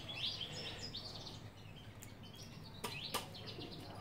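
Faint, short chirps of a small bird, with two soft clicks about three seconds in.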